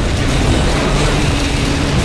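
Soundtrack of a propaganda film played over the room's loudspeakers: a loud, steady, dense rumble with low held tones beneath it, under the film's title card.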